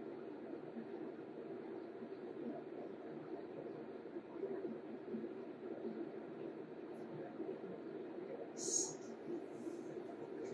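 Quiet room tone: a faint, steady low hum with one short, soft hiss at about nine seconds.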